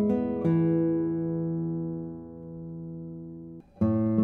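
Solo classical guitar: the 1981 Daniel Friederich cedar-top, Indian rosewood guitar plays a few notes, then a chord about half a second in rings out and slowly fades for about three seconds. After a brief gap, playing starts again just before the end on the 2022 Kazuo Sato Prestige spruce-top guitar.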